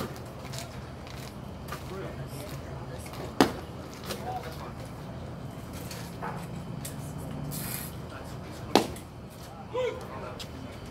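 Two sharp pops about five and a half seconds apart, a baseball smacking into the catcher's leather mitt on successive pitches, over faint crowd chatter.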